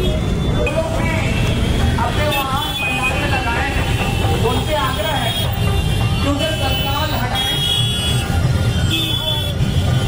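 Busy city street noise: a steady traffic rumble under people's voices, with a few short, high horn toots in the second half.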